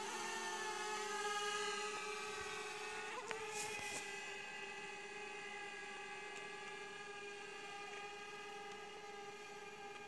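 DJI Mavic quadcopter's propellers whining, a steady hum of several tones that slowly grows fainter as the drone flies off into the distance.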